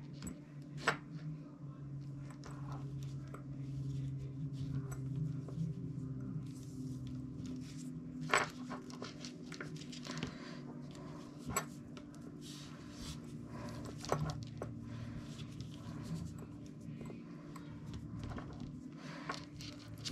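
Soft rustling and scattered light clicks of paracord being handled and tucked through the weave of a woven paracord dog collar, over a steady low hum.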